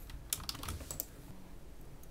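About half a dozen faint, quick clicks of a computer keyboard within the first second.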